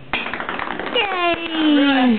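About a second of rapid clattering clicks, then a young child's drawn-out vocal sound that slides steadily down in pitch.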